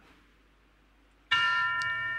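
About a second of near silence, then a bell-like chime starts suddenly and rings steadily on several fixed pitches, a sound-effect cue played over the studio audio.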